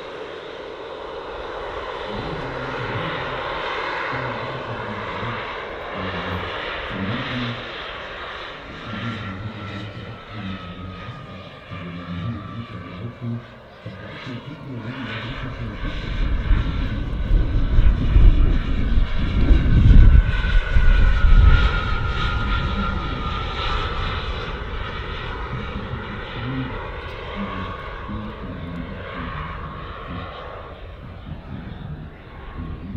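Four small jet turbines (JetsMunt 166) on a large model Airbus A380 in flight: a steady turbine whine and hiss. It swells to its loudest a little past the middle as the model passes, then the whine slowly falls in pitch and fades.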